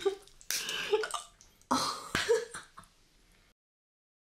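Three short, breathy vocal outbursts from a person, without words; the sound then cuts off suddenly about three and a half seconds in.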